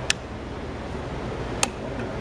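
Two sharp clicks about a second and a half apart as the switch on a display railroad searchlight signal is worked, changing the dark lamp to green, over a steady low background hum.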